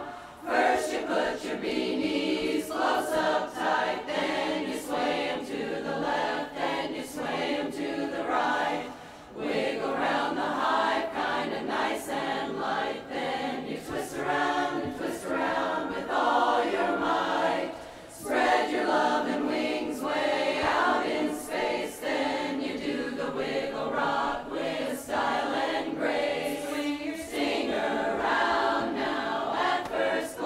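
Women's barbershop chorus singing a cappella in close four-part harmony, with short breaks between phrases about nine and eighteen seconds in.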